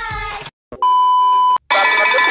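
Pop music cuts off, then a loud steady electronic beep tone lasting just under a second, followed by a high voice starting near the end.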